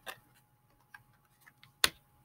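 Tarot cards being handled: a few soft, scattered clicks and ticks, with one sharper click near the end.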